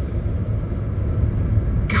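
A car's engine idling, heard from inside the cabin as a steady low rumble.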